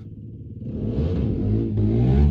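A passing car's engine, heard from inside a parked car, growing louder from about half a second in.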